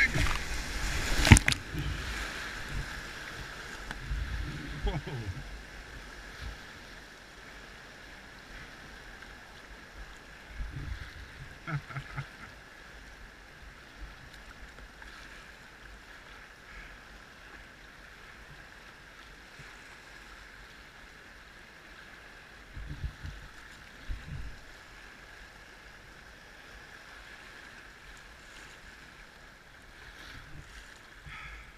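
Whitewater breaking over the bow of a kayak as it punches through a wave train, with two heavy splashes in the first second and a half. After that, the steady rush of the river goes on, with a few short splashes against the hull.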